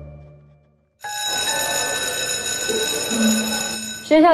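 Soft string music fades out. About a second in, an electric bell starts ringing steadily and continuously for about three seconds.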